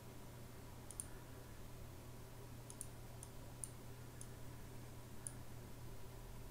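Computer mouse clicking: about seven faint, sharp clicks spaced irregularly, over a low steady hum.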